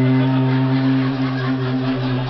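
A man's voice chanting one long, steady note into a microphone: a mock priest intoning the liturgy.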